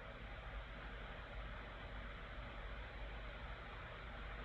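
Steady low background hiss with a faint low hum: microphone room tone.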